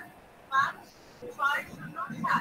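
A person's voice speaking in two short bursts with quiet pauses between; the words are not made out.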